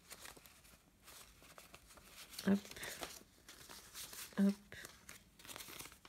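Paper euro banknotes rustling and crinkling as they are handled and sorted out, in several short spells.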